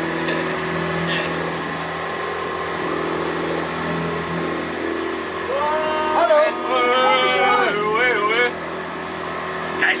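Boat engine running at a steady drone, with a voice calling out for a few seconds past the middle.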